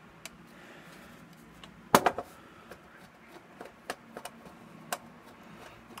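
Faint, scattered small clicks and ticks of a precision screwdriver turning a screw out of a car stereo's sheet-metal chassis, the sharpest click about two seconds in.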